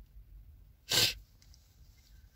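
A woman's single sharp, short breath through the nose about a second in, over a faint low rumble in the car cabin.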